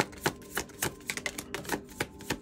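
Tarot cards being shuffled and handled on a tabletop: a quick, irregular run of sharp card snaps, a few each second.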